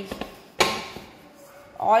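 A ball of oiled chapati dough slapped down into a stainless steel bowl by hand: one sharp wet smack about half a second in, fading quickly, with softer handling noise after it.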